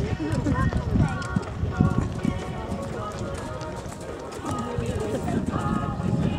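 Hoofbeats of a horse cantering on a sand arena, with voices talking around it.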